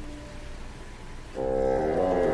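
Live concert music for solo bassoon and string orchestra. A held note dies away, there is a brief hush, and about a second and a half in the ensemble comes back in loudly with a full, many-voiced sustained chord.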